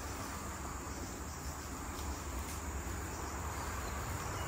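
Steady high-pitched drone of forest insects, with a low rumble underneath.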